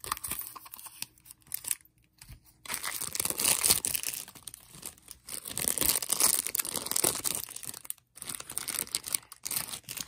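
Small plastic toy-packaging wrapper being torn open and handled, crinkling in irregular bursts. It goes quiet for about a second about two seconds in, and drops out briefly near the end.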